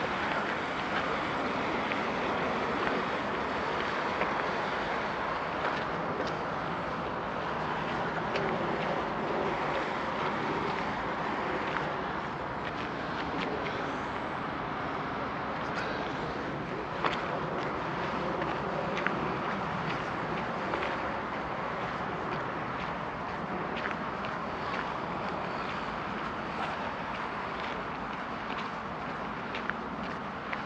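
Wind rushing over the microphone of a camera carried by a runner, with irregular footsteps on a gravel path showing as scattered short clicks.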